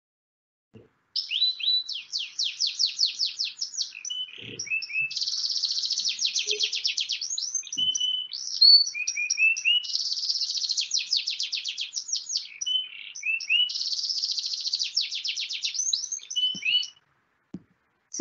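Domestic canary singing, played back from a video: a long song of rapid trills in which each syllable is repeated many times in a quick, even rhythm before switching to the next, moving between high fast rolls and lower notes. It starts about a second in and stops shortly before the end.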